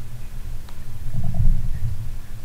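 Low background rumble with a steady hum running under it, and no speech.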